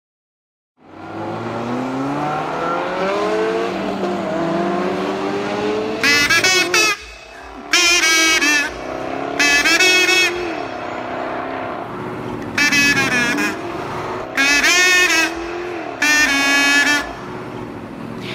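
Car engine revving up, its pitch climbing and dropping back several times as if shifting gears. From about six seconds in come six tyre squeals, each about a second long, over the running engine.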